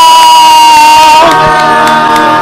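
A group of people cheering and shouting at the close of a sung Christmas song, led by one high voice holding a long note that sags slightly in pitch and fades a little over a second in.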